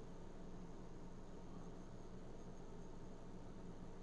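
Faint, steady room tone: a low electrical hum under a soft hiss, with no distinct events.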